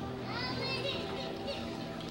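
A woman singing a solo through a microphone, her voice sliding upward about half a second in, with sustained notes underneath.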